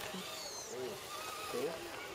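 People talking: casual conversation in German, with short remarks like "Oh" and "So?".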